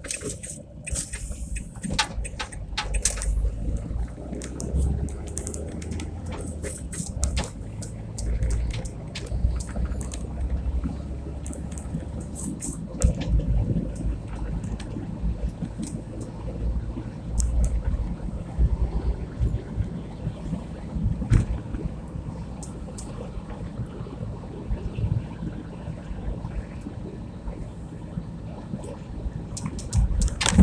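Car engine and tyre noise heard from inside the cabin while driving: a steady low drone, with scattered short clicks and knocks.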